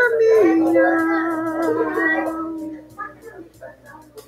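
A single voice singing a Visayan song unaccompanied, holding one long note that steps down in pitch about half a second in and fades out around three seconds in.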